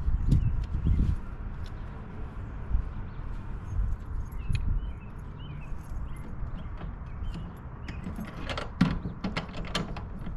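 Metal latch and lock of an enclosed cargo trailer's rear doors clicking and rattling as the doors are fastened, with a quick run of sharper clicks near the end. A low rumble sounds in the first second, and small birds chirp faintly.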